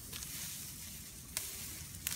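Neem leaves and twigs rustling against the phone's microphone, a steady hiss with a single sharp click a little past halfway.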